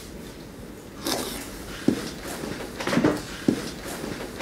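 A loud slurp of hot tea off a spoon about a second in, followed by short spluttering gasps and breaths, with a sharp tap near the middle.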